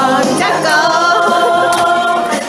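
A group of voices singing unaccompanied in chorus, holding long sustained notes.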